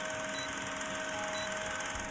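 Old film-projector sound effect: a steady whirring hiss with a fast, even clatter.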